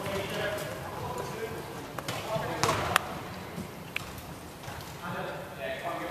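Wheelchair basketball play on a wooden sports-hall court: indistinct players' voices echoing in the hall, and a few sharp knocks of a basketball bouncing on the floor between about two and four seconds in, the loudest near three seconds.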